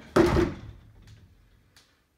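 White panelled closet door being pulled open: one loud knock and rattle about a quarter second in, fading away over the next second, with a couple of faint clicks after.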